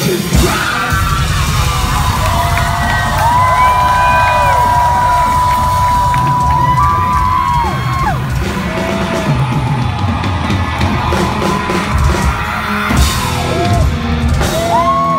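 Rap-rock band playing live at full volume, with heavy low end throughout and a long held high note in the middle, as the crowd yells and whoops.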